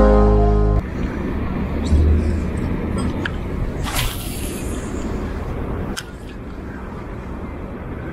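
Background music cuts off abruptly less than a second in. It gives way to a steady outdoor noise haze on a head-mounted camera, with a low thump and a few sharp clicks and knocks.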